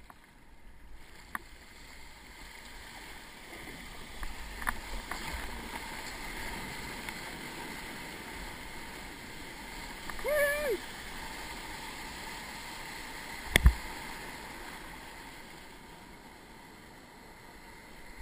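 Broken surf rushing and churning around a kayak, close up, building after a few seconds and easing near the end. A short shout about ten seconds in, and a single sharp knock a few seconds later, the loudest sound.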